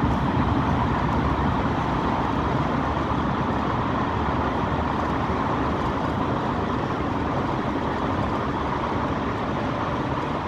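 Steady engine and tyre noise heard inside a moving city bus driving through a road tunnel.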